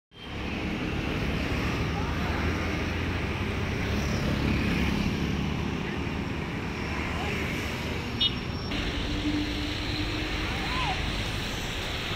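Street traffic ambience: a steady wash of vehicle noise with a low rumble, and a brief high chirp about eight seconds in.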